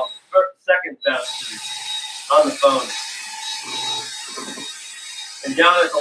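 Cordless drill with a mixing paddle stirring epoxy in a plastic bucket: the drill starts about a second in and runs on as a steady whir with the paddle rubbing in the bucket.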